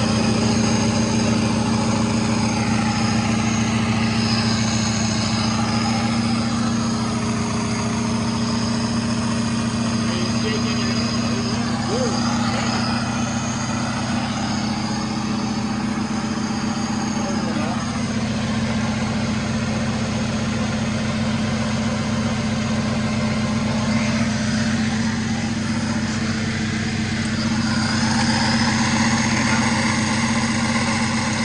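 A car engine idling steadily, its low, even hum unchanged throughout.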